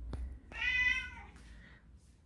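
British shorthair cat giving a single meow, about a second long, starting half a second in.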